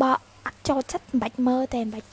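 A woman's voice in short, pitched syllables with brief gaps between them.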